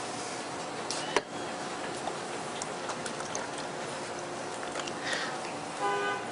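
Espresso machine brewing a double shot, giving a steady hum, with one sharp click about a second in.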